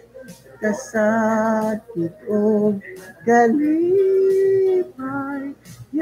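A single voice singing a slow Visayan song unaccompanied, in short phrases with wavering vibrato notes and one long held note near the middle.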